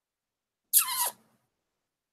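A woman's short, breathy squeal that falls in pitch, lasting about half a second, about a second in.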